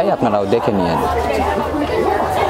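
Speech: a man's voice in the first second, then the overlapping chatter of many people in a large indoor hall.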